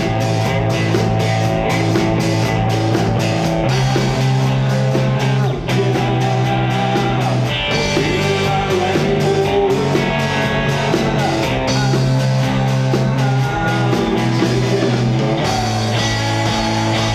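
Live indie rock band playing: electric guitar and bass over drums with a steady hi-hat pulse of about four ticks a second, with a male voice singing.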